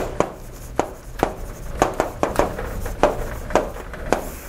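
Chalk writing on a chalkboard: an uneven series of sharp taps and short scrapes as a word is written.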